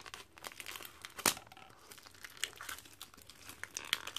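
Thin clear plastic wrap crinkling and crackling as fingers peel it off a small paperback photo booklet. The wrap gives scattered small crackles, with one sharper crackle about a second in.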